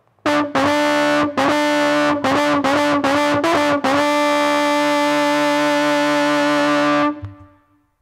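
Tenor trombone played through effects pedals: a quick string of short, separately tongued notes on one pitch, then one long held note that stops abruptly about seven seconds in. A lower tone sounds beneath the trombone's notes.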